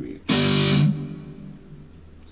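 An electric guitar chord is strummed once, about a third of a second in. It rings loud for about half a second, then is cut short and fades away quietly.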